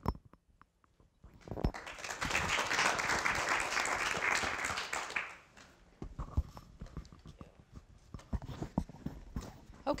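Audience clapping, starting about a second in and lasting about four seconds, then dying away into scattered light knocks.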